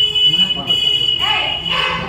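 A steady, high-pitched tone sounds over the voices of several men talking close by; the tone breaks off near the end.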